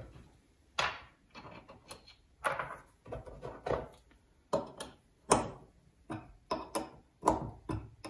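A dozen or so irregular clinks and knocks of steel parts and an open-end spanner being handled and set down on a small milling rotary table on a wooden bench, some with a short metallic ring.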